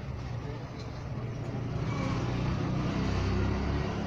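Low rumble of a motor vehicle in the background, growing louder about halfway through and easing off near the end, with faint voices.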